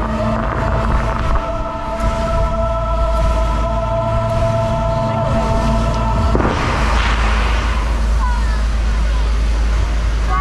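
Fountain-show soundtrack playing sustained chords over a deep rumble. About six seconds in it breaks off into a loud rushing burst as the flame jets fire among the fountains, with gliding tones and crowd voices after.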